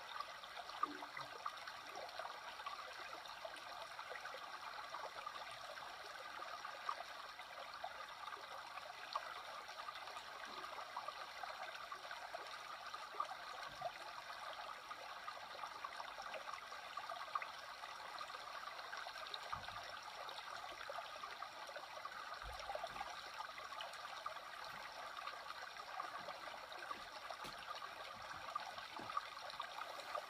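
Shallow creek flowing over rocks: a steady, faint rushing and trickling of water, with occasional small splashes.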